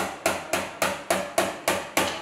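Sharp knocks in a fast, very even rhythm, about three and a half a second, each with a short ringing tail.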